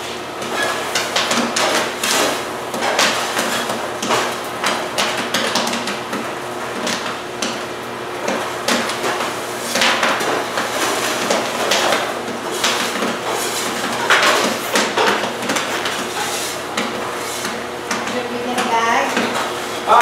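Popcorn kernels popping in a large commercial kettle popper: a dense, irregular crackle of sharp pops and knocks that goes on throughout, over a steady low hum.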